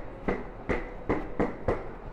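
Footsteps on a hard tiled station floor while walking briskly, about three steps a second in an even rhythm, over a low steady background hum.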